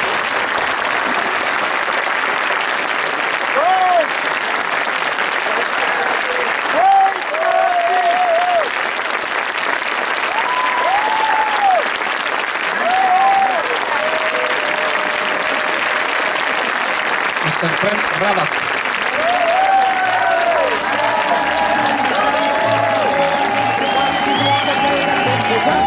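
Large audience applauding steadily after a talk, with a few voices calling out over the clapping. Music comes in near the end.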